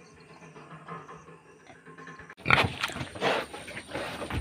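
Pigs in a pen: a low, steady hum at first, then loud pig grunting that starts suddenly a little over two seconds in and carries on.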